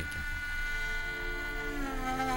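Kamancha (Azerbaijani spike fiddle) bowed in one long sustained note that slides down to a lower note near the end.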